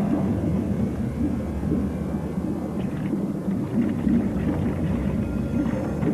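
Deep, steady underwater rumble from a TV drama's soundtrack, a dense low churning with nothing high-pitched in it.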